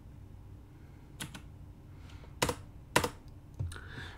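A computer keyboard being typed on: several sharp, irregularly spaced keystrokes.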